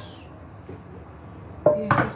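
A metal frying pan is set down with a sharp clank on a gas stove about a second and a half in, after a stretch of low kitchen background. A woman's voice starts just after the clank.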